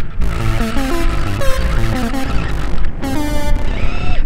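Electronic synthesizer music: a melody of quick notes stepping up and down, with a steady low rumble underneath.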